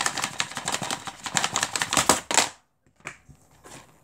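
Handling noise from a DVD case being gripped, turned and moved over a wooden floor: a fast run of plastic clicks and scrapes that stops about two and a half seconds in, then a few faint taps.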